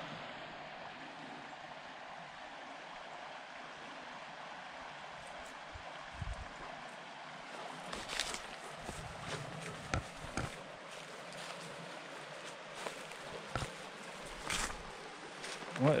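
Creek water running with a steady, even wash. From about six seconds in there are scattered rustles and light crackles in dry grass and leaves.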